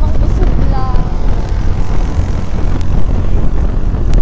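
Motorcycle riding noise: loud, steady wind buffeting on the microphone over engine and road rumble, with a faint voice about a second in.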